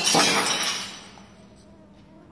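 A loud crash, hit again right at the start, that rings and fades away within about a second.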